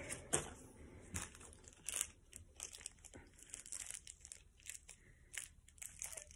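Plastic packaging crinkling in short, irregular crackles as it is handled, quietly, with a few sharper crackles in the first couple of seconds.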